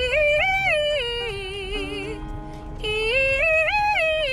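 A woman singing a melody in held notes with vibrato, her pitch climbing and falling in steps, over the low rumble of a car's cabin.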